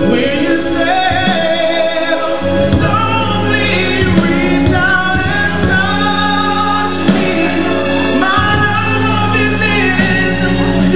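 A man singing into a handheld microphone over music with sustained bass notes and a steady beat.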